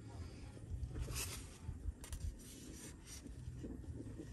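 Faint scraping and rubbing of metal tongs against a tray as raw tri-tip is gripped and lifted, in a few short strokes over a low wind rumble on the microphone.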